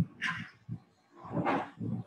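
Short breathy vocal sounds from a man close to the microphone just before he speaks: two brief bursts about a second apart.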